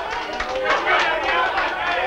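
Several people's voices over a quick, even patter of knocking.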